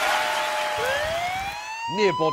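A police-siren sound effect: a single tone rising slowly in pitch, starting about a second in.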